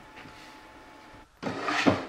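Cut laminated plywood parts being handled, rubbing and sliding against each other and the bench, loudest near the end; before that a faint steady hiss.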